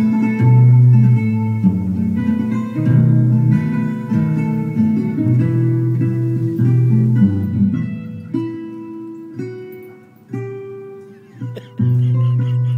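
Recorded guitar music: a plucked melody over held bass notes. It grows quieter about ten seconds in and picks up again near the end.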